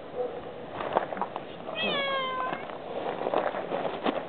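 A cat meowing once, a single call of under a second near the middle, starting slightly higher and settling. A few light knocks and rustles from handling come before and after it.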